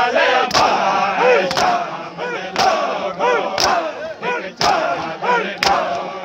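A crowd of men beating their chests in unison during matam, one sharp slap about every second, while many voices chant and call out together between the beats.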